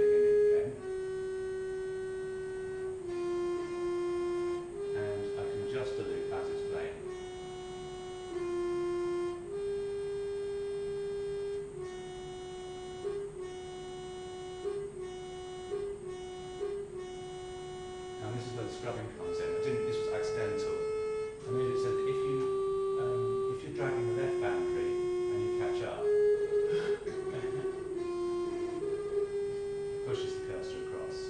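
Music played back over loudspeakers from looped audio in an audio editor: a slow tune of long held notes, each lasting a second or two and stepping up or down in pitch, with short clicky bursts between some of the notes.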